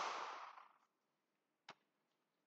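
A single hand clap right at the start, dying away within a second, then one faint sharp click near the end.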